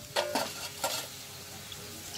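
Empty stainless steel bowl clinking as it is handled and set down on a weighing scale: a couple of metal knocks about a quarter second in, each with a brief ringing of the bowl, and a lighter clink just before the middle.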